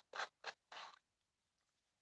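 Plastic screw-on lid of a small acrylic powder jar being twisted open, its threads giving three short scraping rasps within the first second.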